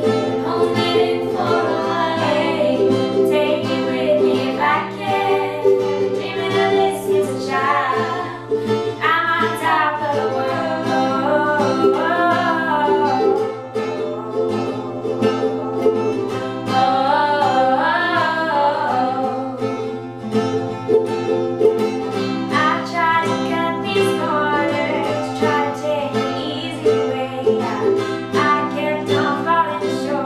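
Two women singing together over a strummed acoustic guitar and ukulele.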